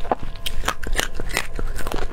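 Close-miked crunching bites and chewing of red chili peppers bitten off a bamboo skewer, about three or four sharp crunches a second.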